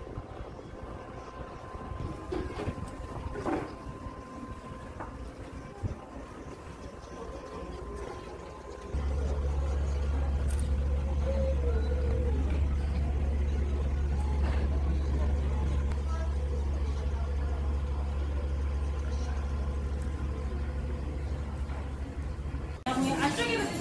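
Quiet ambience with a faint steady tone, then about nine seconds in a loud, steady low rumble starts suddenly and holds.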